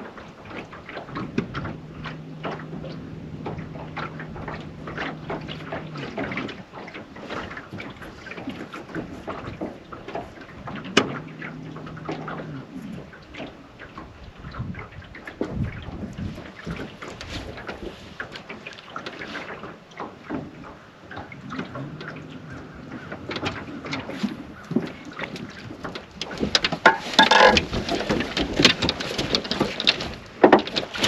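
Knocks, clicks and handling noise in a small fishing boat, with a low steady hum that comes and goes three times. A louder rushing noise builds near the end.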